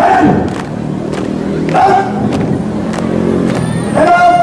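Loud shouted drill calls over a squad marching in step: one call at the start and another about two seconds in, with the regular stamp of feet on paving, a little under two a second, between them and a steady low hum underneath.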